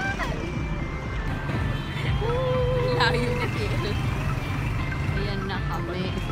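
Steady low rumble of city street traffic, with a voice calling out one long held note about two seconds in.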